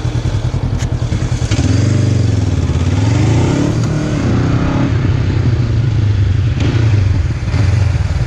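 Honda CB500F parallel-twin engine idling, with a single click shortly before it pulls away about a second and a half in. Its note then rises and falls with the throttle and settles into steady low-speed running.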